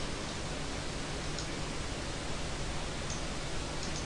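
Steady background hiss of the recording with no speech, an even noise floor.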